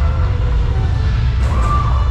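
A steady, loud, deep rumble in a water ride's dark show building. Faint music plays over it, and a brief higher tone sounds about a second and a half in.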